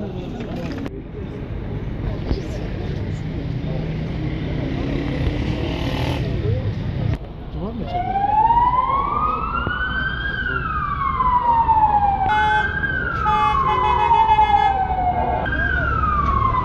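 Street murmur of a crowd, then about eight seconds in an emergency vehicle's siren starts up, wailing in slow rises and falls in pitch and repeating, and becoming the loudest sound. For a few seconds near the end a second, steady pulsing tone sounds with it.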